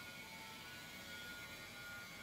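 Faint steady room tone: a low hum and hiss with a thin, even buzz, and no distinct sound event.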